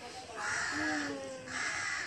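A crow cawing twice in harsh calls, the first about half a second in and the second near the end.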